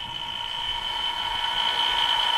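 SCK-300P spin coater motor spinning up a 6-inch silicon wafer toward a set 1,300 rpm: a steady high whine over a whir that grows gradually louder. With such a large substrate the motor lacks the torque to reach its set speed quickly.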